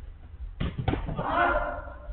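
Two sharp thuds of a football being kicked and striking, about a third of a second apart, followed by a player's shout.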